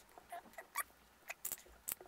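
Small plastic beads clicking lightly against a tabletop and a small plastic cup as they are picked up and dropped in a few at a time: about six faint, separate clicks.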